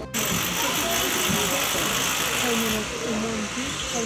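A steady, loud mechanical hiss, such as building-site machinery makes, with indistinct voices talking behind it; the hiss eases back about three quarters of the way through.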